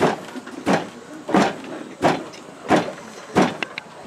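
Long wooden pestle pounding in a tall wooden mortar: six steady, evenly spaced thuds, about one every 0.7 seconds.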